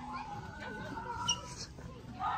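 A plush toy's built-in sound box, set off by a squeeze, giving a drawn-out, high-pitched electronic animal call.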